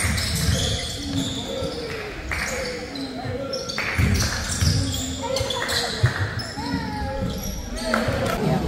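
Basketball game in a gym: the ball bouncing on the hardwood floor amid players' indistinct voices, echoing in the large hall.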